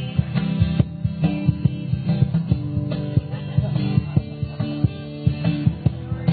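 Live acoustic guitar playing an instrumental passage, strummed in a steady rhythm with no singing over it.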